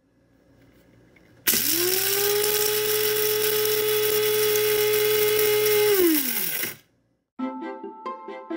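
Electric blade coffee grinder grinding coffee beans: its motor spins up quickly about a second and a half in, runs at a steady high whine for about four and a half seconds, then winds down with falling pitch once the button is released.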